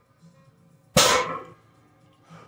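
A loaded barbell with cast iron plates set down on a rubber floor mat at the end of a deadlift: one loud clank about a second in, with the plates ringing briefly after it.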